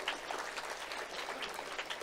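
Audience applause: many scattered hand claps from a large crowd.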